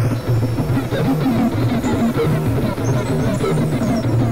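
Experimental electronic synthesizer music: a dense, steady stream of short, stepping low synth notes under a noisy, crackling upper layer, with no clear beat.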